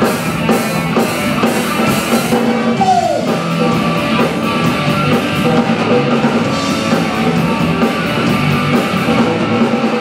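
Live rock band playing: drum kit with cymbals marking a steady beat, electric guitars and bass guitar, with one falling bent note about three seconds in.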